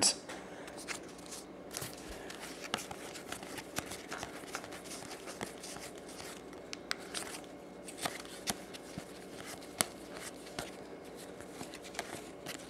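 A stack of 2010 Topps baseball cards flipped through by hand, card stock sliding and clicking softly at an irregular pace, with a few sharper snaps.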